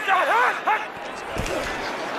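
A man's voice in a few short calls during the first second, over a steady background of broadcast crowd noise, then a low thud about one and a half seconds in.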